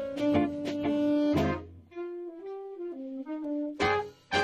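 Small swing jazz band playing live, with trumpet, trombone, clarinet, saxophone and upright bass. The full ensemble plays until about halfway through, then drops out to a single horn playing a short melodic line, and the whole band comes back in with a sharp accented hit near the end.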